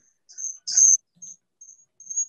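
High-pitched audio feedback from a video call's feedback loop: a thin whistling tone in a string of short chirps, loudest a little under a second in.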